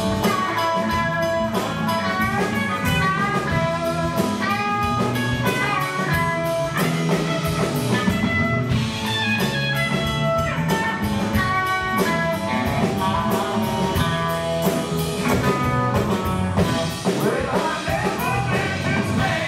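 Live band playing an instrumental passage of a blues-rock song: an electric guitar melody over bass guitar and a drum kit.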